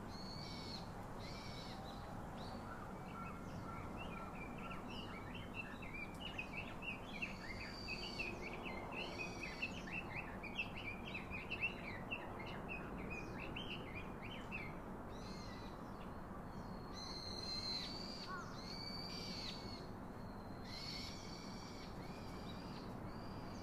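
Wild birds calling: repeated high arching whistled notes, with a quick run of chattering notes through the middle.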